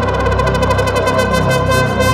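Minimal techno track: held synthesizer tones over a low bass line, with fast, evenly spaced ticking high percussion.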